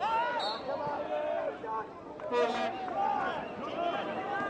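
Men's voices shouting and calling out on a football pitch, with a louder shout about two and a half seconds in.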